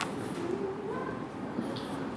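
Low cooing calls of a dove over a steady room background, with faint strokes of a marker writing on a whiteboard.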